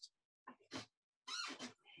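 A few short, quiet vocal sounds, such as breaths or half-started syllables, heard through a video call.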